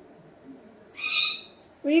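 Cockatoo giving one short, harsh screech about a second in, lasting about half a second.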